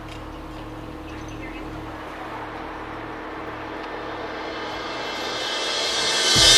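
Outdoor traffic background: a steady low hum with a passing vehicle growing louder toward the end.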